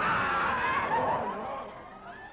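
Audience laughter from many people, loud at first and fading toward the end.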